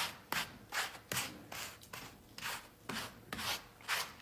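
Hairbrush scrubbing over the hair of a deer shoulder mount in quick repeated strokes, about two to three a second, brushing the dust out of the hide as the first step in cleaning it.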